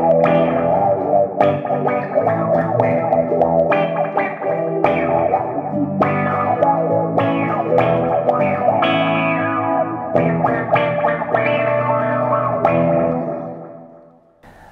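Gretsch hollow-body electric guitar played through an MXR Bass Envelope Filter pedal, the filter opening up on each hard pick attack: a run of picked notes and chords that dies away near the end.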